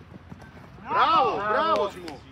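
A man's loud, drawn-out shout on the pitch, starting about a second in and lasting about a second, its pitch rising and falling several times.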